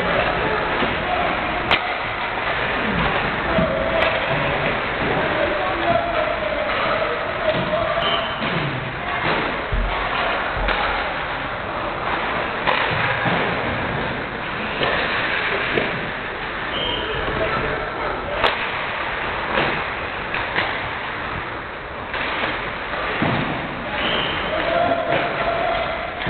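Ice hockey drill on a rink: skates scraping and carving the ice, with sharp clacks and thuds of pucks off sticks and boards scattered throughout.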